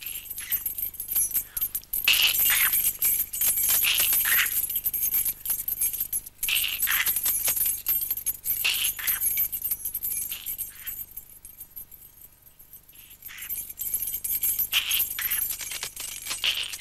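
A small bell jingling in repeated shaken bursts, dying down for a couple of seconds about eleven seconds in, then jingling again. The bell stands in for a rattlesnake's rattle on a toy snake.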